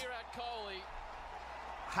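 Speech: a man's voice in the first second, then a lull of low background noise, with speech starting again at the very end.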